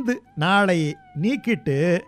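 A voice in long, gliding, sing-song phrases with short pauses between them, and a faint steady tone behind.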